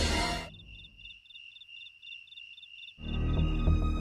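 Crickets chirping: a steady high trill pulsing about four times a second. Background music fades out at the start and new music comes in about three seconds in.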